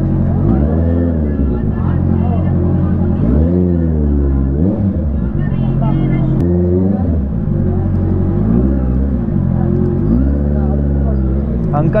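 Honda CBR650R's inline-four engine at low speed, revved in short repeated blips every second or two, its pitch rising and falling each time, to open a path through a crowd on foot.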